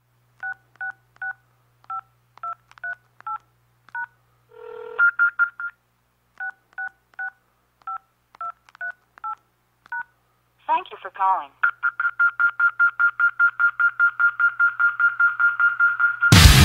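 Touch-tone telephone being dialed: two quick runs of keypad beeps, eight and then nine presses, with a short low beep between them. Then comes a brief warbling sound and a high tone pulsing about seven times a second.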